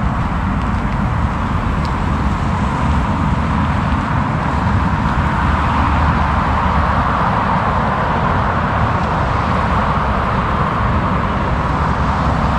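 Steady road traffic noise from cars passing on a motorway below, a continuous tyre-and-engine hiss and rumble that swells a little midway.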